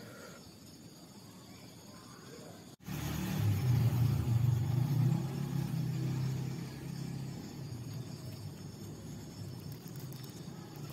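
A low rumble starts abruptly about three seconds in, is loudest for the next few seconds, then eases off to a steady lower level.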